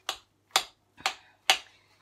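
Four sharp clicks about half a second apart: a fork tapping against a ceramic plate while mixing a quinoa salad.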